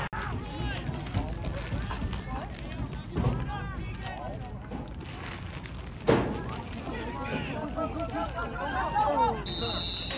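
Scattered voices of spectators and players on and around a youth football field, with a sharp knock about six seconds in. Near the end comes a short, steady blast of a referee's whistle, marking the play dead.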